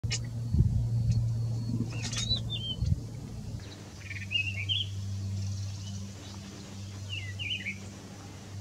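Cinnamon-chested bee-eater giving short twittering calls, one burst about four seconds in and another near the end, over a steady low hum. A few chirps and clicks come earlier.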